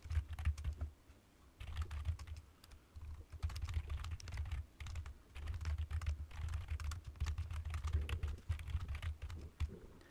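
Typing on a computer keyboard: quick runs of keystroke clicks, with a short pause about a second in.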